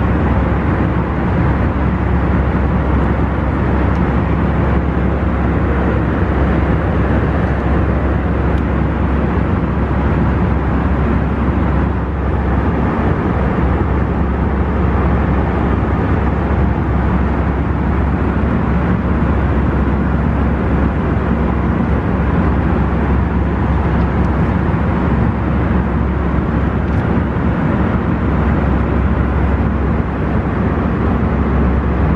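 Steady, unbroken drone of jet engines and rushing air in the passenger cabin of an Airbus A319 in cruise, heard from a seat.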